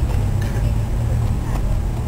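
Steady low rumble of outdoor background noise picked up by the camera microphone, without a clear voice over it.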